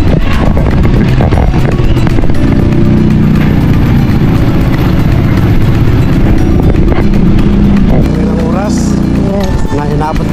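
Motorcycle engines running at low speed close by: a steady low drone, with wind rumbling on the microphone.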